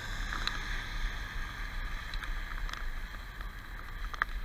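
Steady wet hiss of rain and water on wet pavement, with scattered light ticks and a low rumble of wind on the microphone.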